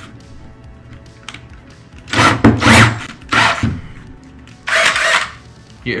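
Ridgid cordless drill sounding in three short bursts, each under a second, as its chuck is tightened onto a bolt through a wire spool, over faint background music.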